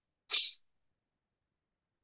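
A single short, hissy breath noise from a man, about a third of a second long, shortly after the start.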